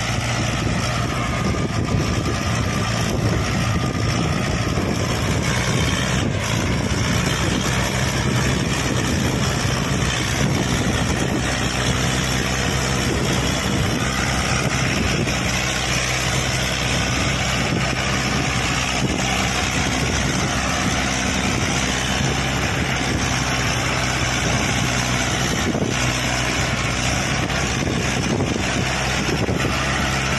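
Mahindra Arjun 555 tractor's diesel engine running steadily under heavy load as it hauls a fully loaded trolley, hard enough that the front wheels lift.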